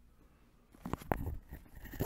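A person's close-up mouth and throat noises, non-speech, starting about a second in, ending in a sharp click.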